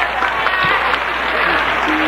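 Congregation applauding steadily, with faint voices underneath.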